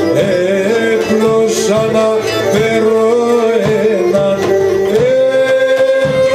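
Live Pontic folk music through a PA: a man singing, accompanied by Pontic lyra, daouli drum and guitar.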